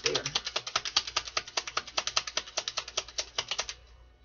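Tarot cards being shuffled by hand: a fast, even run of crisp card clicks, about ten a second, that stops shortly before the end.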